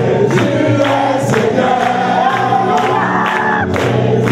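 A congregation sings a gospel song in chorus, with a steady beat of sharp strikes about twice a second.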